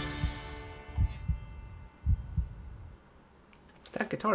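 The closing notes of a pop song fade out over the first second or so, joined by a handful of soft low thumps: low strings plucked on an electric guitar.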